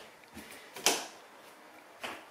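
A single sharp knock or click just under a second in, with a faint softer tap before it.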